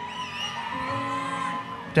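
Live reggae band's backing music playing softly between vocal lines, mostly held chords, with some whooping from the crowd.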